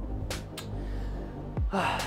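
Background electronic music with a deep, falling bass-drum hit repeating, over which a man is out of breath after exercise: a short breath about a third of a second in and a louder gasp near the end.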